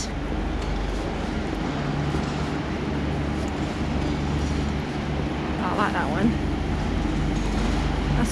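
Steady low hum and background noise of a large indoor exhibition hall, with a brief voice about six seconds in.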